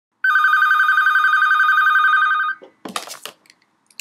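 A telephone ringing: one trilling ring lasting a little over two seconds, cut off, then a short clatter as the receiver is picked up.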